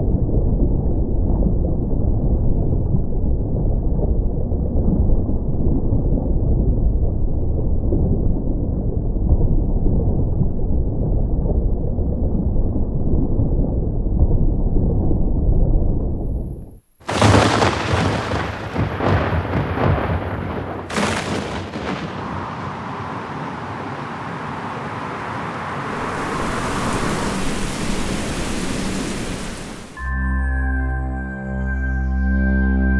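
A steady deep rumble that stops abruptly just past halfway, followed by a thunderstorm: a few sharp thunder cracks, then heavy rain hissing and building toward the end.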